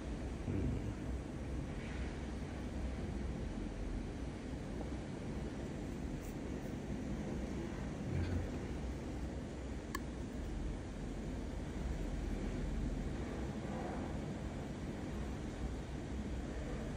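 Steady low rumble and hiss of background noise, with a single faint click about ten seconds in.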